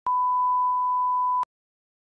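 Steady 1 kHz test-tone beep, the line-up tone that goes with TV colour bars, held for about a second and a half and cut off abruptly.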